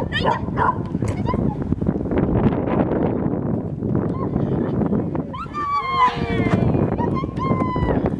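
A small dog gives a run of short, high yips with falling pitch about five to six and a half seconds in, and another near the end, over steady low noise. A person's voice is heard near the start.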